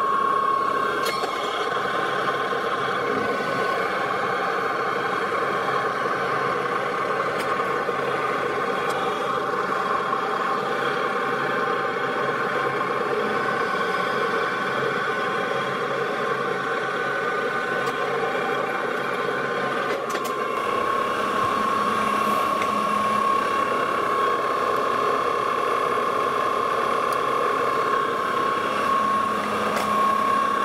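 Metal lathe running with a steady gear whine while the tool takes a cut on a metal part held in a collet chuck. The tone of the machine shifts slightly about twenty seconds in.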